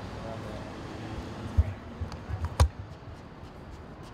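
Outdoor background noise with faint voices at the start and two low thumps about a second apart, the second with a sharp click.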